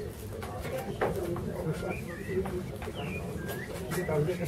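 Birds calling: a few short chirps that glide up and down in pitch in the second half, over people talking in the background.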